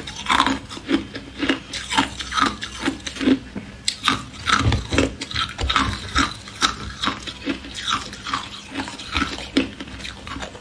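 Ice being chewed close to the microphone: sharp crunches in a quick, even rhythm of about two a second.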